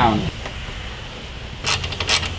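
A 14 mm wrench tightening the bolt on a light bar's mounting bracket: a low steady hum, then near the end a short run of metal clicks and scraping as the wrench works.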